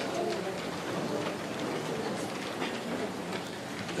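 Steady background noise of a large hall in a pause between spoken words, with no distinct event standing out.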